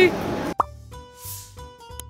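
A quick rising 'bloop' sound effect about half a second in, followed by light, sparse plucked-sounding background music over a soft bass pulse.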